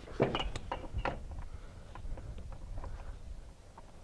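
Scattered light metal clicks and knocks as the steel end fitting of an over-the-wheel tie-down strap is worked into a steel E-Track rail. The fitting is not clipping in easily.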